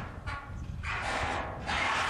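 A loose, shrapnel-holed corrugated metal roof sheet scraping and grating as it sways, in long swells that rise and fall.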